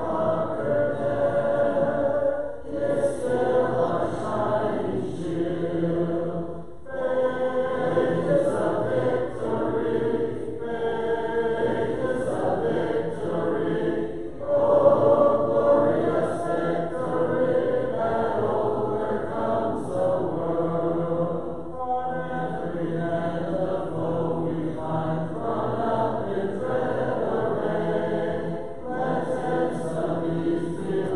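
Church congregation singing a hymn a cappella, many voices together with no instruments. The singing breaks briefly between lines, about every four to eight seconds.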